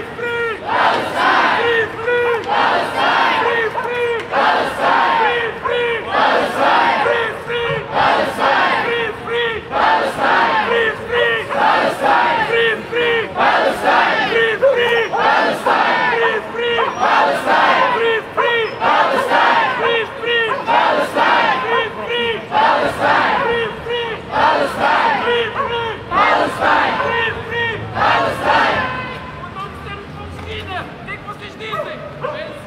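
Crowd of marching demonstrators chanting a slogan together, shouted over and over in a steady rhythm, loud, easing off near the end.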